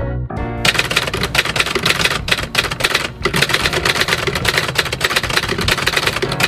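Manual typewriter typing a rapid run of keystrokes, keys clacking in quick succession, starting about half a second in, over background music.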